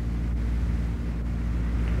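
Steady low electrical hum with a hiss over it, the background noise of an old 1950s recording, with no words spoken.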